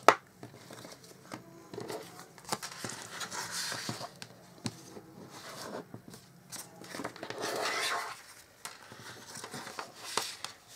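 Scored cardstock being folded and its score lines burnished with a bone folder: a sharp tap at the start, then scattered small clicks and paper rustles, with two longer rubbing passes of the tool over the paper, one a few seconds in and one near the end.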